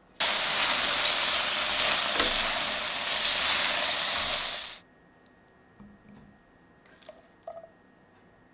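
Chickpeas and spice paste sizzling in a hot pan as a spatula stirs them: a steady, loud hiss that starts suddenly and cuts off after about four and a half seconds. A few faint light clicks follow.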